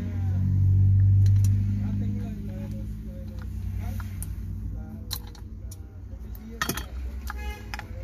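Pliers clicking on a steel snap ring as it is forced into its groove on a starter motor's drive shaft. There are scattered sharp metal clicks, with a brighter cluster and a brief ring near the end. A low rumble swells and fades in the first couple of seconds.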